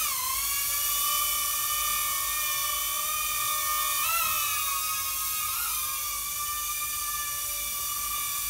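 Mini toy drone hovering, its small electric motors and propellers giving a steady high whine that dips briefly in pitch about four seconds in and again a moment later.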